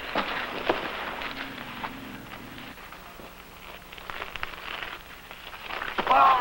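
Scuffling feet and blows of a hand-to-hand fistfight, heard as scattered sharp knocks over a rough noisy background, busier in the first second or so.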